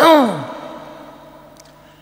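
A monk's voice: one loud, drawn-out syllable that drops steeply in pitch at the start and trails off within about half a second, during a sermon delivered at a microphone. A faint steady hum runs underneath.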